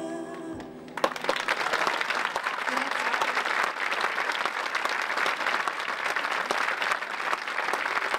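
The last note of a classical guitar and voice dies away, then an audience bursts into applause about a second in and keeps clapping steadily.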